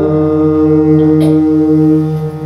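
Harmonium and electronic keyboard holding a steady, sustained chord without tabla, in an interlude of Sikh kirtan.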